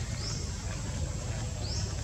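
Two short, high, upward-sweeping chirps from a small bird, about a second and a half apart, over steady low outdoor background noise.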